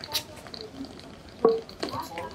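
Footsteps of trainers on stone steps: a few short scuffs and steps, the loudest about one and a half seconds in.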